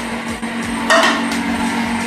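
Wire whisk beating a thin batter of water, oil and flour in a stainless steel bowl, clinking against the metal, over a steady low hum.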